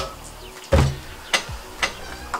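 A heavy chainsaw, a Husqvarna 61 with its cover off, is set down on a table: a thump about two-thirds of a second in, then two lighter knocks.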